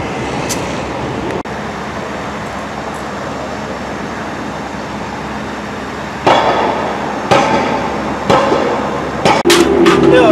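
A steady mechanical rumble, then from about six seconds in four heavy metal-on-metal hammer blows about a second apart, each ringing briefly.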